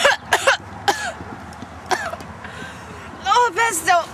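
A young woman coughing and clearing her throat in several short bursts, followed near the end by longer, wavering voiced sounds.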